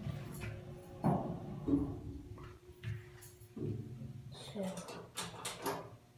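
Faint steady hum inside a hydraulic elevator cab while it travels, with soft, scattered voice sounds and a quick run of sharp clicks about five seconds in.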